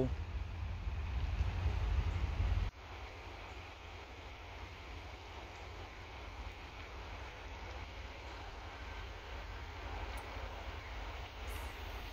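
Faint, steady distant rumble of an approaching freight train's diesel locomotives, not yet in sight. Wind buffets the microphone for the first few seconds and cuts off suddenly, leaving the quieter rumble.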